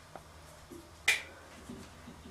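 A single sharp click about a second in, with a fainter tick just before it, in a quiet small room.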